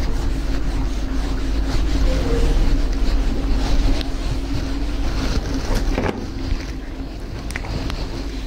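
Felt whiteboard eraser rubbing across a whiteboard in uneven strokes, over a steady low hum.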